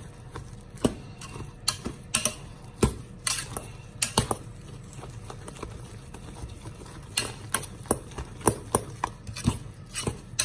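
Metal potato masher pressing boiled potatoes in an enamel-lined pot, with irregular clicks and knocks of the masher against the pot, coming in clusters.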